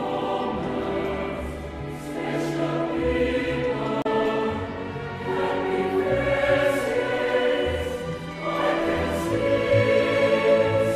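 Christmas music: a choir singing sustained notes over instrumental backing.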